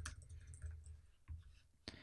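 A few faint, scattered computer keyboard keystrokes as code is edited.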